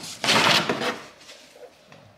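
Large plastic underbody cover being pulled down off the underside of a car: a click, then a loud scraping rustle of the panel for about half a second, followed by quieter handling.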